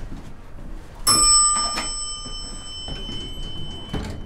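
A bell-like chime struck about a second in and again just under a second later, its tones ringing on and slowly fading.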